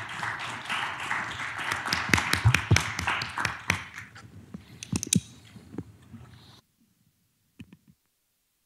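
Applause from a small audience, the separate claps of a few people audible, thinning out and fading over several seconds before cutting off suddenly; a couple of faint clicks follow near the end.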